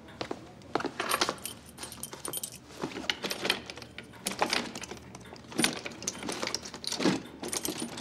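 A key rattling and clicking in a desk drawer's lock in irregular bursts as someone tries to open it; the lock is stuck and the drawer won't open.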